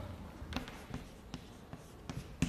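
Chalk writing on a blackboard: a few faint, irregularly spaced taps of chalk strokes against the board.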